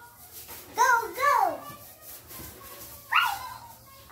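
A young child's voice: two short, high-pitched calls that fall in pitch, the first about a second in and the second near the end.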